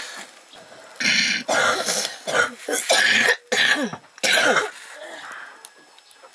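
A person coughing hard several times in a row for about three and a half seconds, starting about a second in.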